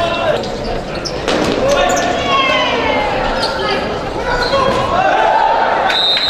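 A futsal ball being kicked and bouncing on a sports-hall floor, with repeated short thuds, amid players' shouts, all echoing in a large hall.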